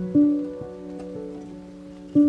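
Slow, soft classical piano music: a chord struck just after the start and left to fade, with a few quieter notes over it.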